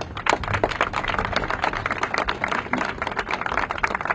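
Audience applauding: many hand claps in a dense, steady run.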